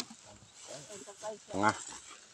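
Faint voices of people talking in the background, with a short, louder voiced sound near the end.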